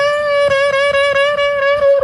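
Human beatboxer holding one long, steady pitched note into a cupped microphone, with quick faint clicks keeping a beat beneath it.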